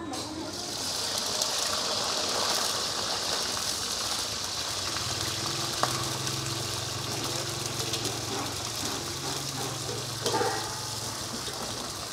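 Weevil grubs (đuông) frying in hot oil in a wok: a steady sizzle that begins abruptly just after the start.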